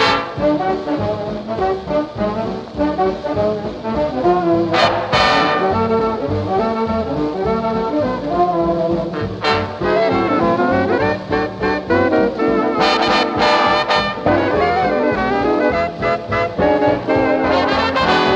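Swing-era big-band jazz playing an instrumental passage led by the brass section, with loud ensemble accents about a third of the way in, near the middle and again a little later.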